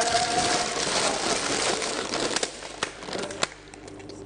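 Paper or plastic packaging crinkling and rustling as it is handled, dying away after about two and a half seconds, followed by a few sharp clicks.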